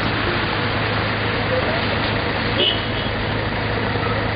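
Steady hiss of heavy rain on a city street, with traffic noise from the wet road and a low steady hum underneath.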